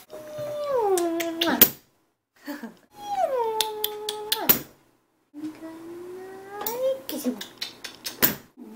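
Long, drawn-out "ooh" vocal calls, three in all: the first two slide down in pitch and then hold, and the third rises slowly.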